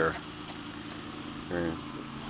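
A man's voice briefly at the start and near the end, over a steady low mechanical hum that does not change.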